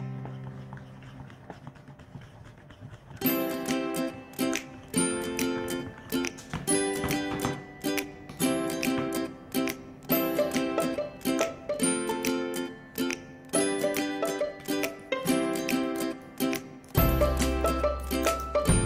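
Background music: a bright, plucked ukulele tune with a steady rhythm, coming in about three seconds in after a quieter, fading opening.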